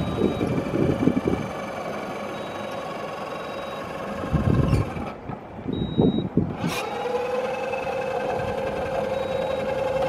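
Powered stair climber's electric lifting motor whining steadily as it steps a loaded drum down over a pallet edge, with heavy thumps as the machine and drum settle onto the wood. The whine changes to a lower, steadier tone about seven seconds in.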